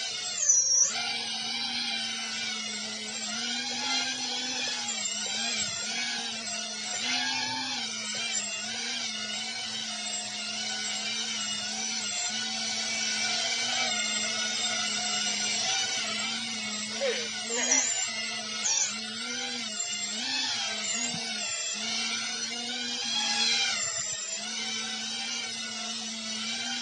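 Small FPV racing quadcopter's brushless motors and propellers whining in a hover, a high buzzing whine whose pitch wavers constantly up and down as the throttle is corrected, with a few short louder swells, one right at the start and a few more in the second half.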